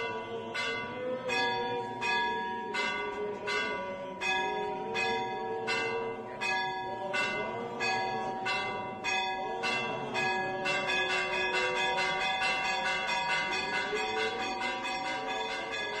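Church bells struck over and over in quick succession, each strike ringing on, joyfully announcing the Resurrection at the Greek Orthodox midnight Easter service.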